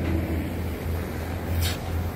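A steady low outdoor rumble, with one short, hissy swish about one and a half seconds in.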